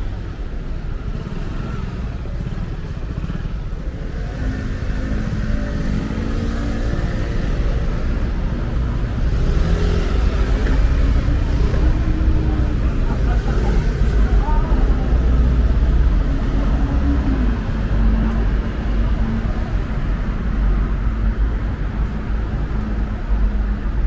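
Busy city-intersection traffic: car, bus and motorcycle engines running and passing, with a steady low rumble that grows louder in the middle stretch. Voices of passers-by are mixed in.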